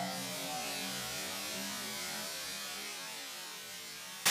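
A large bowl of water pouring steadily over a person and splashing onto a tiled floor, a constant rushing hiss that eases slightly towards the end.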